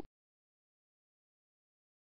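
Silence: the audio track is empty.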